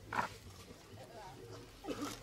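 A person's brief wordless vocal sounds: a short falling cry about a fifth of a second in, and another near the end, with faint background between.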